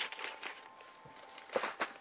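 Plastic bags of new rifle magazines crinkling and rustling as they are handled and set down, with a louder burst of crackling a little past halfway.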